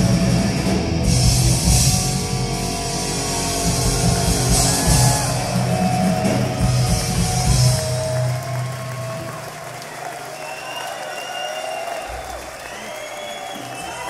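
Heavy metal band playing the closing bars of a song live on electric guitars, bass guitar and drums. The final chord dies away about eight seconds in, and the crowd cheers and whistles.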